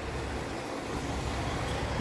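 Steady outdoor background noise, a low rumble with a light hiss above it, with no distinct events.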